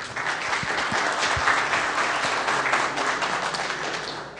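Audience applauding: a steady patter of many hands clapping that dies down near the end.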